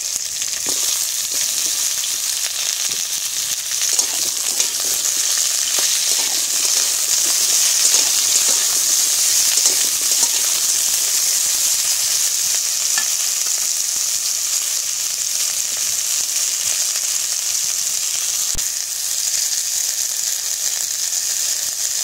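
Potato wedges and drumstick (moringa) pieces sizzling steadily in hot oil in an iron wok, with the occasional scrape and knock of a metal spatula stirring them. The sizzle is a little louder in the first half.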